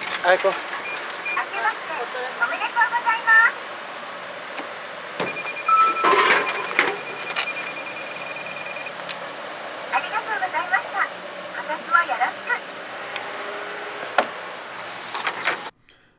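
A Japanese drink vending machine's recorded female voice speaking short polite New Year phrases ("Akemashite omedetou gozaimasu", "kotoshi mo yoroshiku"). About five seconds in, a steady electronic beep tone sounds for several seconds alongside sharp clicks and clatter from the machine.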